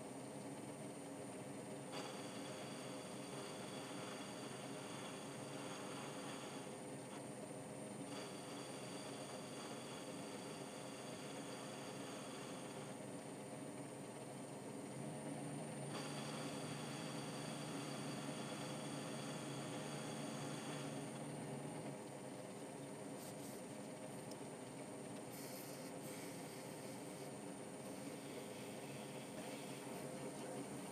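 Atlas 10-inch metal lathe running steadily, its tool bit taking a cut along the nose taper of a 3C collet blank. The sound shifts every few seconds and grows a little louder for several seconds past the middle.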